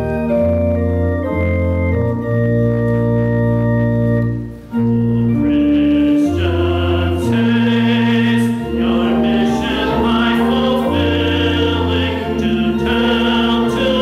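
Organ playing a hymn's introduction in sustained chords, with a short break about five seconds in. After it the congregation joins in singing the hymn over the organ.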